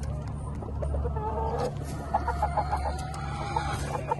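Gamefowl chickens clucking, a run of short repeated notes starting about a second in, over a steady low hum.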